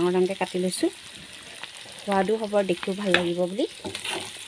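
Pork pieces sizzling in a pan as a spatula stirs them, a steady hiss of frying. A person talks over it twice, once at the start and again from about halfway through, louder than the frying.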